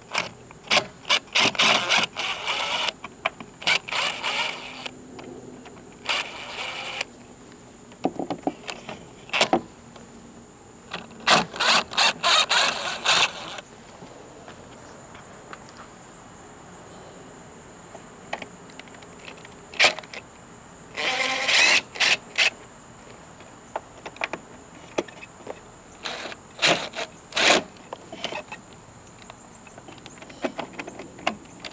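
A DeWalt cordless impact driver backing out the battery-pack screws on a self-balancing scooter. It runs in about five short spells of one to two and a half seconds each, with sharp clicks from the bit and the screws in between.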